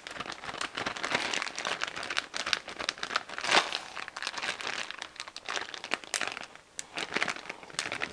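Plastic one-gallon Ziploc bag crinkling and crackling as hands squeeze the air out of it and press along its zip seal.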